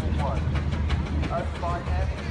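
Outdoor showground ambience: a steady low rumble with indistinct voices of onlookers in the background.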